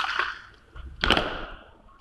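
A single sharp slap about a second in, with a short ringing tail: a catafalque party's rifle drill movement after a shouted command.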